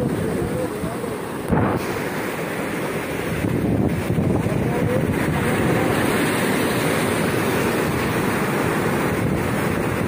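Heavy surf breaking and churning over rocks, a continuous wash of rushing water, with wind buffeting the microphone. A brief thump about a second and a half in.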